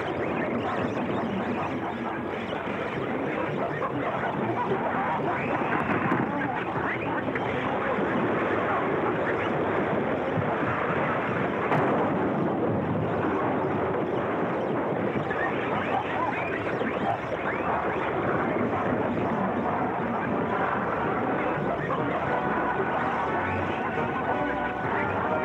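Many monkeys chattering and screeching at once in a dense, continuous din. Music comes in faintly near the end.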